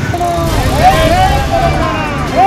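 Men's voices shouting slogans in long, drawn-out calls, over a low rumble of street traffic.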